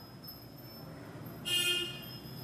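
A single short horn toot about one and a half seconds in, lasting under half a second, over faint background hiss.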